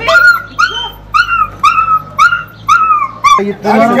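A puppy trapped down a narrow drain pipe crying in short, high-pitched whimpering yelps, about two a second, a distress call. A man calls out near the end.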